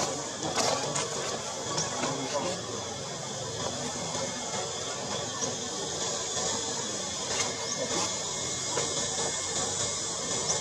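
Indistinct voices and faint music over a steady hiss.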